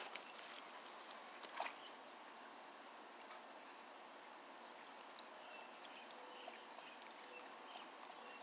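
Near silence: a faint, steady outdoor background hiss, with one brief faint sound about a second and a half in.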